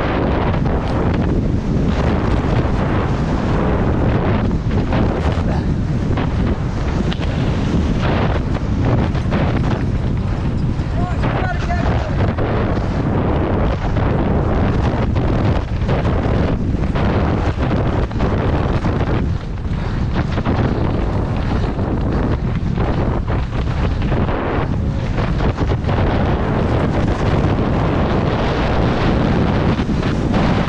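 Wind buffeting a helmet-mounted camera's microphone on a downhill mountain bike at speed, over the noise of knobby tyres on a dirt and gravel trail. The bike rattles and knocks over bumps throughout.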